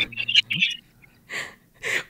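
A woman laughing softly under her breath: a few short, breathy puffs with quiet pauses between them.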